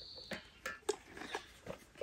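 A few faint, separate clicks and light knocks from hands handling a funnel and gas can at a motorcycle's fuel tank.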